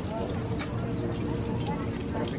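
Background chatter of people talking, with scattered light clicks.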